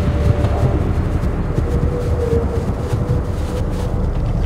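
A steady low rumble with a faint, held higher tone above it.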